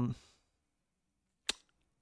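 A man's drawn-out 'um' trailing off at the start, then silence broken by a single sharp click about one and a half seconds in.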